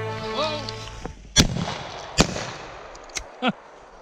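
Two shotgun shots about a second apart, each a sharp crack with a short echo, as music fades out beneath.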